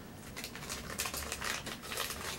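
Small paper-and-plastic packaging being handled and opened by hand: a quick run of light crinkles and ticks that grows busier about half a second in.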